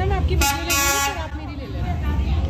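Train horn sounding once, about half a second in, for under a second, over a steady low rumble as the train approaches.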